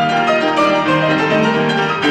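August Förster grand piano played solo: a steady run of quick notes over held bass notes.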